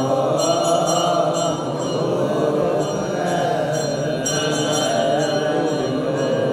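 A group of men chanting together in long, slowly wavering held notes: Orthodox Tewahedo liturgical chant sung by deacons and clergy.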